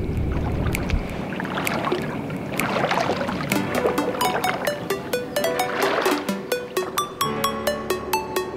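Outro music with a steady electronic beat. The beat becomes clear about three and a half seconds in, after a low rumble in the first second.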